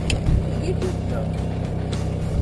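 Steady low hum of a motor running on the boat, with faint voices behind it.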